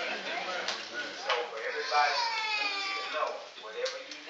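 A man speaking into a microphone, with one long held pitched cry about two seconds in.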